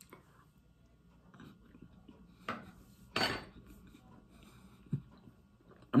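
A metal spoon clinking and scraping as ice cream is scooped and eaten: a few short, sharp sounds between quiet stretches, the loudest about three seconds in.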